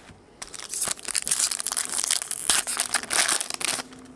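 Foil wrapper of a chrome baseball card pack being torn open and crinkled by hand: a loud crackling rustle that starts about half a second in and stops just before the end.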